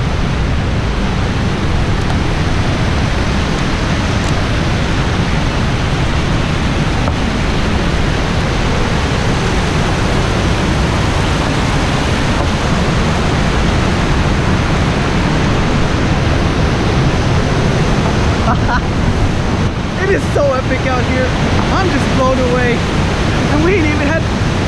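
Loud, steady rush of a mountain stream swollen with snowmelt, pouring down a waterfall over rock slabs close to the microphone. A man's voice comes in faintly over the water near the end.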